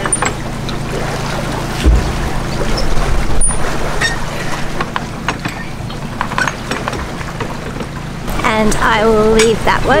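Canal lock paddle gear being wound up with a windlass, its rack and ratchet pawl clicking irregularly, over steady wind rumble on the microphone with a low thump about two seconds in. A voice comes in near the end.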